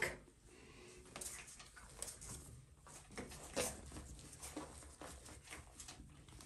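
Faint rustling and a few soft scattered taps as a mesh bath pillow is handled and pressed onto a bathtub by its suction cups.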